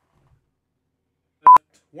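Silence, then about one and a half seconds in a single short, loud electronic beep: one steady high tone that starts and stops abruptly.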